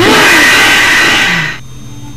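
Cartoon sound effect for a flower springing open into a toothed carnivorous plant: a loud rushing noise with a wavering pitch under it, lasting about a second and a half. It then drops away to a faint steady low hum.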